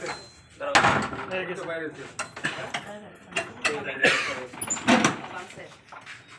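A padlock on a door hasp being unlocked with a key: several sharp metallic clicks and clunks, then the wooden door being opened, with people talking.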